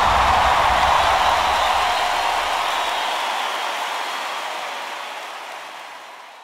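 Large concert audience applauding, an even wash of clapping that fades out gradually over the last few seconds.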